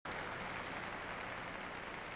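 A steady, even hiss with no speech or music in it.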